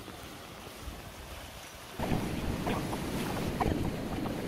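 Fast glacial river rushing over stones, a steady hiss of water mixed with wind on the microphone, becoming much louder about halfway through.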